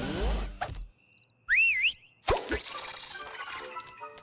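Cartoon sound effects with music: first a noisy whoosh with a rising sweep. After a short gap comes a brief warbling whistle-like glide that goes up, down and up again, then a sharp hit and busy music.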